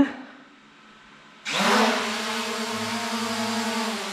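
SJRC F11S Pro 4K quadcopter's brushless motors and propellers spinning up suddenly about a second and a half in. The whine rises briefly in pitch, then holds steady as the drone lifts off and hovers.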